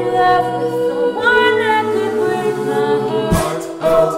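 An a cappella vocal group singing held, wordless chords in close harmony, with the chord changing about a second in and again about two seconds in. Vocal percussion kicks and snares come in near the end.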